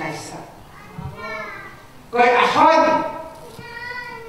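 Speech only: high-pitched voices talking in short phrases in a large hall, quieter in the first two seconds and loudest just after, ending on one drawn-out syllable.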